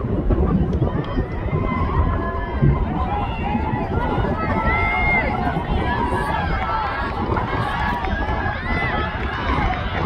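Scattered spectators shouting and calling out, many voices overlapping, with wind rumbling on the microphone.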